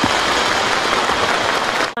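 A large crowd applauding: dense, steady clapping that cuts off just before the end.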